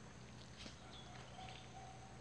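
Near silence: faint outdoor background with a few soft, scattered clicks and a faint on-and-off hum.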